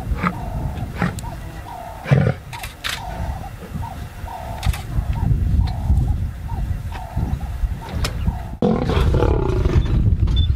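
Male lion roaring in a long series of short grunts, about one a second, over a low rumble. Near the end the sound changes abruptly to a louder, noisier stretch as lions charge in the dust.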